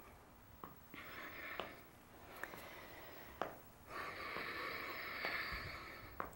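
A person breathing out audibly during exercise, two long soft breaths. A few faint clicks fall in between.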